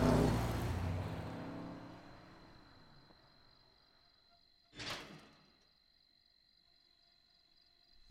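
Car engines driving away and fading out over the first few seconds, leaving a quiet night with faint, steady high-pitched cricket chirring. One short, sharp rustling or scraping noise sounds about five seconds in.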